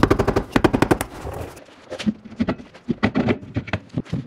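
Rapid metal-on-metal striking, about nine hits a second, easing about one and a half seconds in into slower, irregular knocks and clanks: a hammer and pry bar working a car's differential third member loose from its gasket seal on the rear axle housing.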